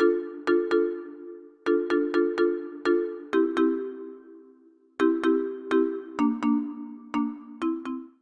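Background film music: a repeating phrase of sharply struck, bell-like notes over a held chord that steps lower twice, stopping at the very end.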